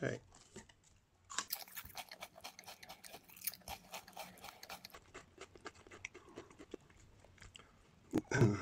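A thin, long potato chip being bitten and chewed: a quick run of faint, crisp crunches starting about a second and a half in and thinning out near the end.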